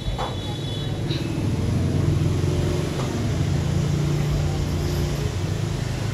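Low engine rumble of a passing vehicle, swelling in the middle and then easing off.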